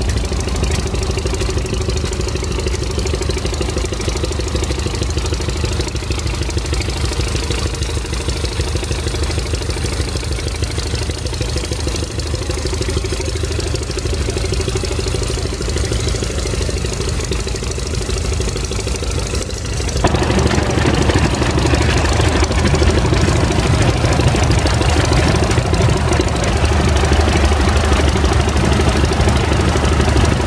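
Engine of an early Case tractor with steel wheels running steadily; about two-thirds of the way through, the sound suddenly becomes louder and fuller.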